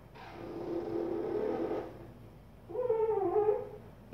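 Whiteboard marker squeaking against the board as lines are drawn: one scratchy stroke lasting about two seconds, then a shorter squeak that wavers in pitch near the end.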